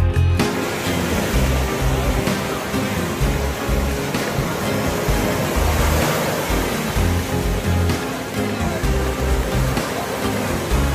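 Steady rushing wash of ocean surf breaking on a sandy beach, coming in a moment in, under background music with sustained low notes.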